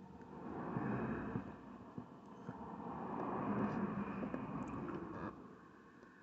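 A passing vehicle: its noise swells in, stays up for several seconds, then fades away about five seconds in, with a few faint clicks over it.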